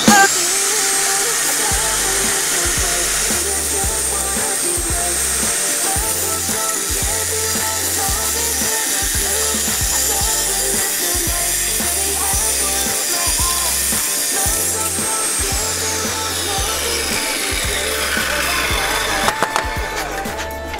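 Table saw running while a plastic cash tray is fed through it: a high motor whine rises right at the start, holds steady, and falls away over the last few seconds as the saw winds down. Background music with a steady bass beat plays underneath.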